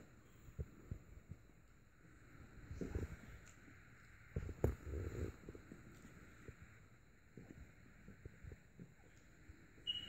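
Faint rustling and soft low thumps as French bulldog puppies squirm and nurse on a fleece blanket, mixed with bumps from the hand-held phone. The thumps cluster around three and five seconds in, with one sharp click among them.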